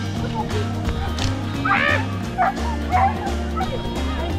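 A dog yipping a few times in short high calls, over background music with a steady beat.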